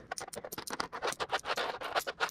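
Loose coins slid across a tabletop and clinking together as they are counted by hand: a quick run of small clicks and scrapes.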